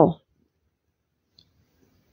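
Near silence after a woman's voice trails off at the very start, with one faint click about a second and a half in.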